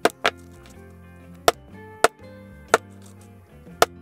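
Mallet striking a stitching chisel through cow leather to punch stitching holes: six sharp knocks, the first two about a quarter second apart, then single strikes every half second to a second. Soft background music runs underneath.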